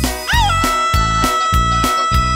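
Instrumental passage of a regional Mexican song: a lead instrument bends up into one long held high note over a steady bass and drum beat.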